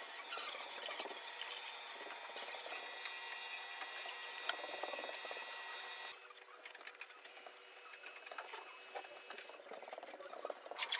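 Faint workshop room sound: a steady high whine that cuts off about six seconds in, with small clicks and rustles of hand work on the box.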